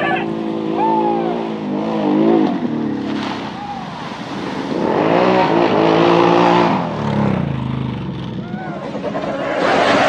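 ATV engine revving hard in the mud, its pitch climbing and falling in repeated bursts, with the longest and loudest rev from about five to seven seconds in.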